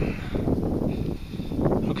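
Wind buffeting the microphone in an open field: an uneven low rumble that rises and falls.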